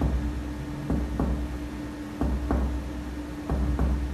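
Finger-on-finger (pleximeter) percussion of a man's front chest wall: dull taps that come in pairs about a third of a second apart, a pair roughly every 1.3 seconds, three pairs in all. The examiner is working down from the second rib beside the left sternal edge to map the upper border of relative cardiac dullness.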